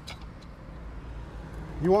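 Low, steady outdoor background rumble, with a man's voice starting near the end.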